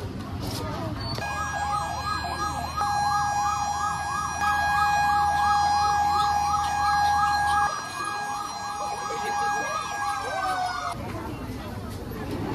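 A siren sounds for about ten seconds: a steady tone with a quick rising-and-falling warble laid over it about two to three times a second, starting about a second in and winding down in pitch near the end.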